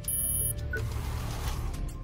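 Background music from the documentary being watched, with a few faint very high tones in the first half-second and a hiss-like swell around the middle.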